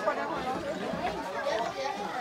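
Background chatter: several people talking at once at a distance, the words indistinct.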